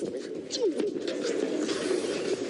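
A man's wordless crying out, a low voice sliding up and down in pitch, with no clear words.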